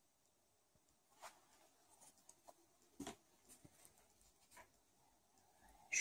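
Near silence with a few faint, short ticks and rustles, the clearest about three seconds in: a thin steel crochet hook and cotton yarn being worked by hand.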